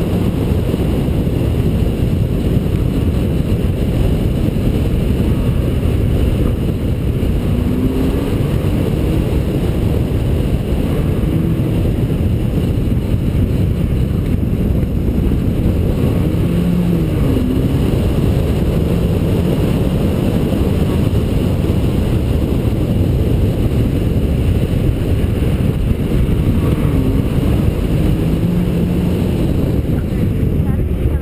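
A car engine pulling hard through an autocross course, largely buried under a heavy, steady wind rumble on the camera microphone; its faint pitch rises and falls several times as the car speeds up and slows between cones.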